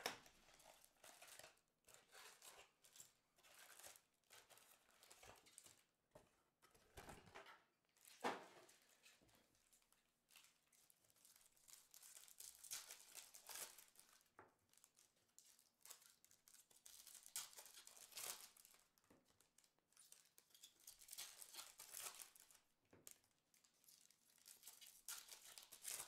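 Faint crinkling and tearing of a 2023 Topps Update baseball card pack's wrapper being opened by hand, with cards sliding out, and a single sharper knock about eight seconds in.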